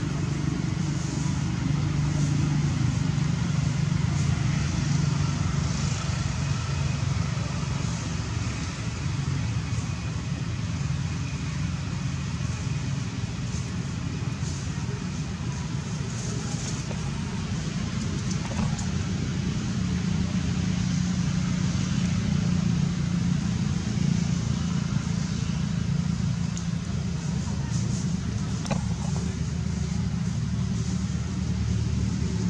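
Steady low rumble of distant motor traffic that swells and eases slowly, with faint voices in the background.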